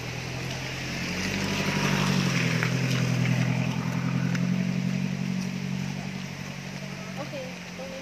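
A motor vehicle's engine running steadily at a constant pitch. It grows louder over the first couple of seconds, then fades, as it passes close by.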